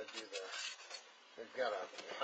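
A man's voice talking in short, indistinct stretches, with a brief pause about a second in.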